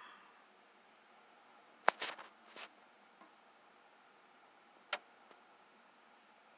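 A few isolated sharp clicks and light taps in an otherwise quiet room: one about two seconds in followed by a short cluster, and another near five seconds.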